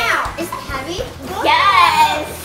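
Young girls' excited, wordless voices: a high cry sliding down in pitch at the start, then another loud, high-pitched exclamation about a second and a half in.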